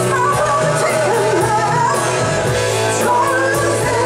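Live rock band playing, with a woman singing lead over electric guitars and drums.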